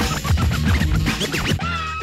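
Hip-hop DJ set: rapid turntable scratches over a heavy beat, giving way about one and a half seconds in to a held, steady sampled tone.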